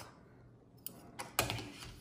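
A few light clicks and rustles as fabric and trim are handled at a sewing machine that is not running. They start about a second in, after a quiet moment.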